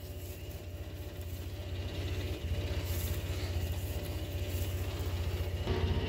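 Engine of a Polaris Ranger side-by-side idling, a low, even throb.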